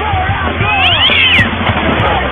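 A cat yowling, with a few high cries that rise and fall about a second in, over loud rock music.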